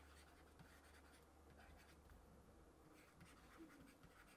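Near silence: faint scratching and tapping of a stylus writing on a tablet, over a low steady hum.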